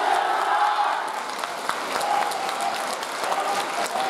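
Audience applauding steadily, with some voices over the clapping.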